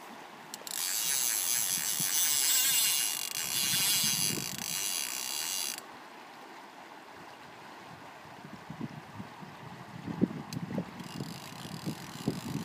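Click-and-pawl fly reel ratcheting loudly as line is pulled off the spool, for about five seconds, then stopping; a fainter, shorter run of ratcheting returns near the end.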